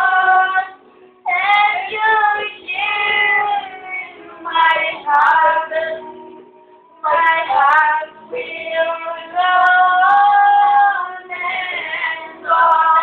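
High-pitched singing voice, sung in phrases with short pauses about a second in and again around six seconds in.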